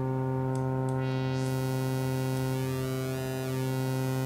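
Diversion software synthesizer holding one steady low sawtooth bass note through a low-pass filter. About a second in, its top end opens up bright and hissy, with a shifting, swirling shimmer in the highs as an effect is turned up.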